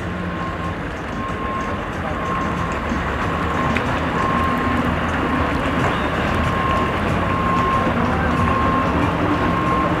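Boat engine running at low speed, a steady low rumble that grows gradually louder, with a faint high beep repeating about once a second.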